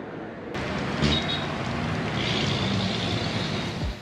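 Water poured from a plastic bottle, splashing onto a cap and the pavement, over steady street traffic with a large vehicle's engine running close by. The sound starts abruptly about half a second in.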